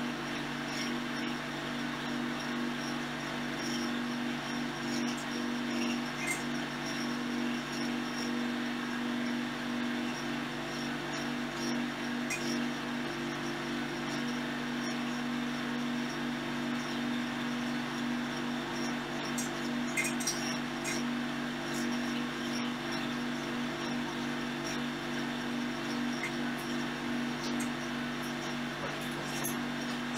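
Steady low electrical or mechanical hum of room tone, with a few faint clicks scattered through it.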